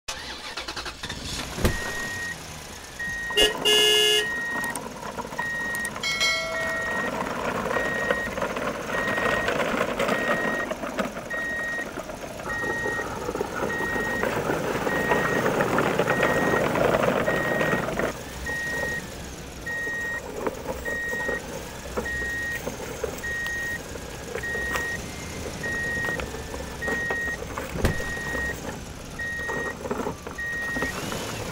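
Steady run of short, identical high beeps, about two a second, like a truck's reversing alarm. A loud pitched blast comes about 3.5 s in and a shorter one near 6 s, and a louder rushing noise lasts from about 7 s to 18 s.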